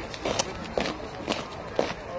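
A squad of soldiers in army boots marching in step on a tarmac road, their footfalls landing together about twice a second.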